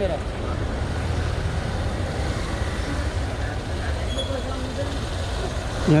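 Motorcycle engine idling with a steady low rumble; a voice says "yeah" at the very end.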